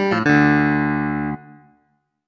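Clavinet voice of the Studiologic Numa Player sound library: a quick note or two, then a held chord that stops sharply about one and a half seconds in, with a short fading tail.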